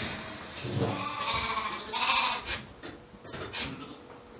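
Shetland sheep bleating: a low call just before a second in, then louder, higher bleats.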